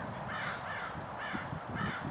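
A bird calling outdoors, about three short calls spread across the two seconds.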